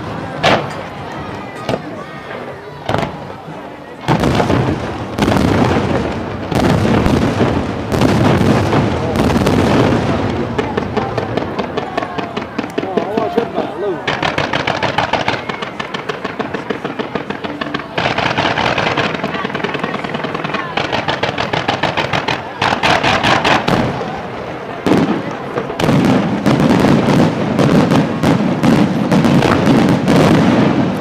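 A fireworks display: bangs and shell bursts come at intervals, then through the middle comes a long stretch of rapid, dense firing of volleys, and more bursts follow near the end.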